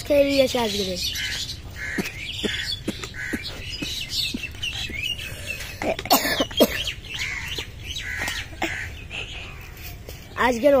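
Birds chirping in short repeated calls, after a boy's voice briefly at the start, with a sharper burst of sound about six seconds in.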